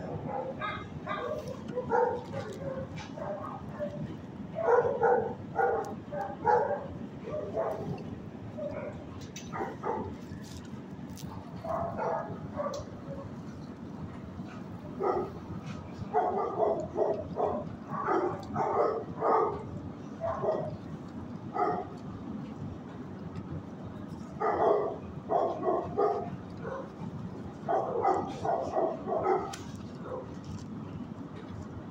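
Dogs barking in a shelter kennel, in bursts of several barks every few seconds, over a steady low hum.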